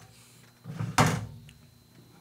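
A single sharp knock about a second in, with a brief low rumble just before it.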